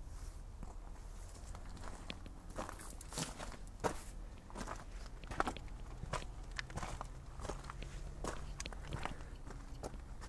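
Footsteps of a person walking over grass at a steady pace, soft crunching steps coming roughly one to two a second.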